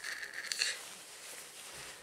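Synthetic polyester shorts fabric rustling as hands stretch it and turn it over, louder at first and then fainter.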